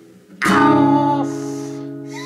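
A chord strummed once on an acoustic guitar about half a second in after a brief lull, then left to ring and slowly fade.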